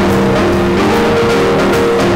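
Jazz quartet playing live: a drum kit played with sticks, cymbals struck in a steady pattern, under held melodic notes that move from pitch to pitch.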